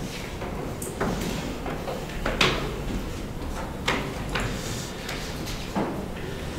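Room sounds from people seated at a meeting table: a low steady hum with about five small knocks and rustles spread over a few seconds.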